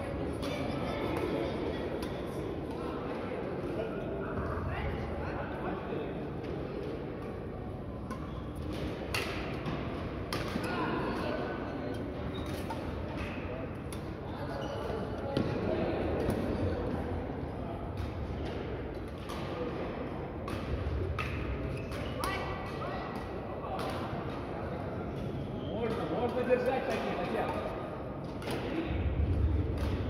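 Badminton rackets striking shuttlecocks in rallies on several courts, sharp hits at irregular spacing a second or two apart, ringing in a large hall, over a murmur of players' voices.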